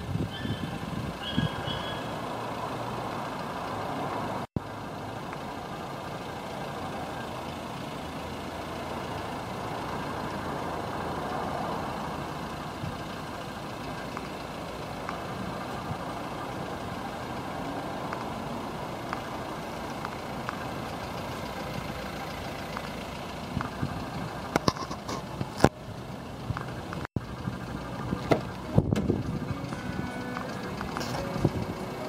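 Steady motor-vehicle noise, with a few clicks and knocks near the end as a car door is opened.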